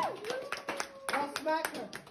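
Scattered hand clapping from a few people, irregular and uneven, as a sung note trails off at the start, with brief snatches of voices in between.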